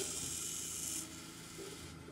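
K40 CO2 laser cutter engraving cardboard: the stepper-driven head moves over the work with a steady mechanical hiss, which drops in level about a second in.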